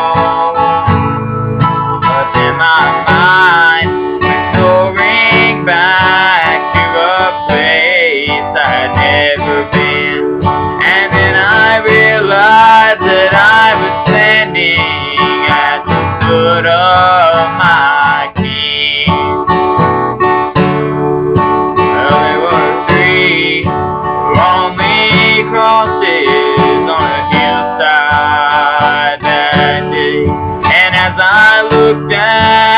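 A man singing to his own acoustic guitar accompaniment.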